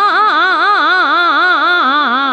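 Hindustani classical vocal taan in Raag Bhairav: a singer runs a fast, unbroken passage whose pitch swoops up and down about six times a second, over a steady drone.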